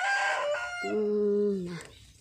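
A rooster crowing once, its call ending about a second in.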